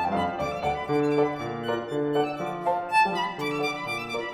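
Violin and piano playing a reel-style passage of concert chamber music, the violin leading with rhythmic bowed notes over the piano.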